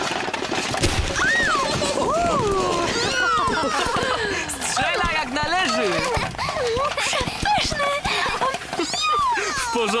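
Cartoon characters' voices exclaiming and calling out in rising and falling glides, wordless or nearly so, over background music, with a low thump about a second in.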